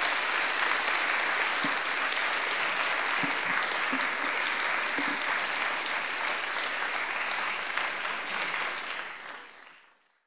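Audience applauding steadily, fading away near the end.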